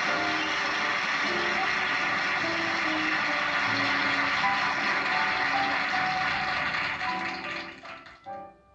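Studio audience applauding over a band playing walk-on music. Both fade out near the end.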